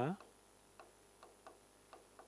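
A pen tip tapping on a writing board during handwriting: a few faint, irregularly spaced ticks.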